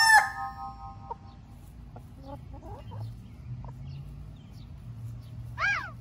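Chickens: the end of a rooster's crow right at the start, then faint scattered clucks, and a short call that rises and falls in pitch near the end.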